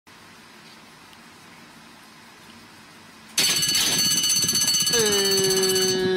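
Racetrack starting-gate bell ringing loudly and steadily, starting abruptly about three and a half seconds in as the gates open. Near the end a long, held pitched tone joins it.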